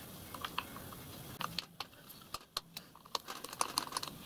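Irregular light clicks and ticks of small steel parts being handled on a miniature locomotive tender chassis, as a keeper bar is fitted across the axlebox guides and an Allen key is set to its screws. The clicks come more thickly in the second half.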